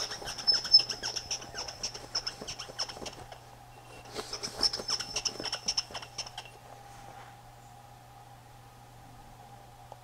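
Acetone-wetted paper towel squeaking as it is rubbed in quick strokes along the steel capstan shaft of a VCR capstan motor, in two bouts of a few seconds each, cleaning residue off a shaft that has been binding in its bushing and looks scored.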